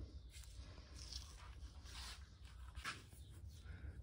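Faint, scattered light scrapes and small clicks of hands and tools handling the rocker arm and valve-shim parts of a motorcycle cylinder head, over a low steady hum.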